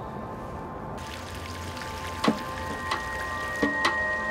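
A few separate water drips falling in a concrete drainage tunnel, sharp and echoing, over soft background music with held tones.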